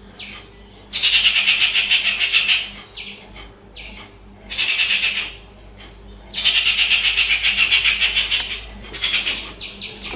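Birds giving harsh, rapid, rattling chatter in high-pitched bursts: three main bursts, the first and last about two seconds long, with shorter ones near the end.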